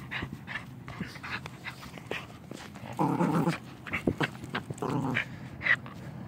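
A small shaggy dog tugging at a toy in its mouth, growling in short irregular bursts, loudest about three seconds in.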